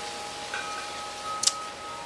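Wind chimes ringing: a few held, overlapping tones, with a short sharp click about one and a half seconds in.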